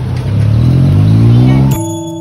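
A motor vehicle's engine accelerating in street traffic, its pitch rising and growing louder over about a second and a half. Near the end it cuts off abruptly and keyboard background music begins.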